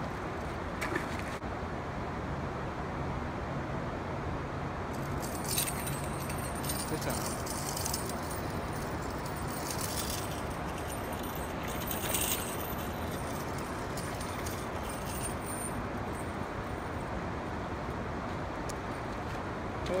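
Spinning reel being cranked as a fish is reeled in, giving a run of fine metallic clicking, thickest in the middle, over a steady hiss.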